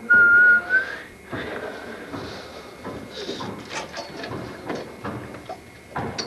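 A person whistling one high, steady note for about a second, rising slightly at the end, followed by faint, indistinct voices and a few light knocks.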